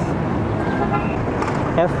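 Steady outdoor background noise, with a brief faint tone about half a second to a second in.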